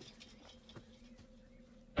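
A quiet lull with a faint steady low hum and scattered faint ticks.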